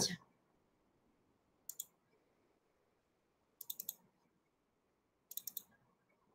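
Short bursts of clicking from computer keyboard keys: two clicks, then two quick runs of about four clicks each, with silence between them.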